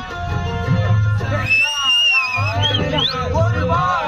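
A loud song with a steady drum beat. About one and a half seconds in, the beat drops out for about a second under a high held melody note, then comes back in.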